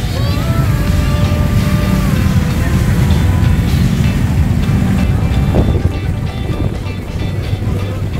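Busy street-market ambience: a steady low rumble of motorbike traffic and wind on the microphone, with music playing under it and a note held for about two seconds near the start.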